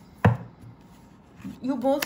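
A single sharp tap on the tabletop as cards are handled, a quarter second in. A woman starts speaking near the end.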